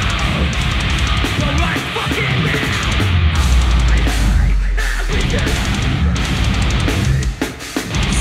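Metalcore band playing live: distorted electric guitars, bass and drum kit with a vocalist screaming. A heavy low note is held for a couple of seconds in the middle, and the band briefly drops out near the end.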